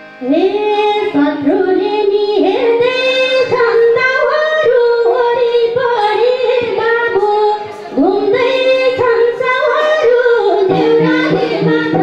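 A woman singing a Nepali lok dohori folk song solo, in long held notes, with a brief pause about eight seconds in.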